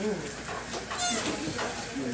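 Indistinct voices in a small room, with a short high-pitched vocal sound, like a laugh or squeal, about a second in.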